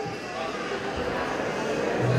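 Indistinct voices of people talking, with no single clear speaker.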